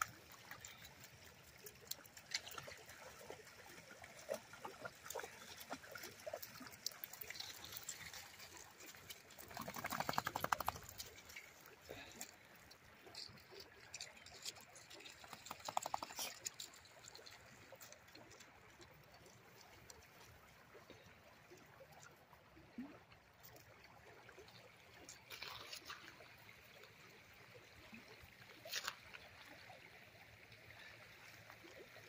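Faint river-shore sounds: scattered light clicks and crunches of paws and feet on gravel over a faint trickle of water. A brief pitched sound stands out about ten seconds in, and a shorter one around sixteen seconds.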